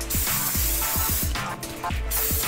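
Aerosol cooking spray hissing onto the hot cast iron paddles of a waffle iron in a long burst that stops about a second and a half in, then starts again at the very end. Background music with a steady beat plays underneath.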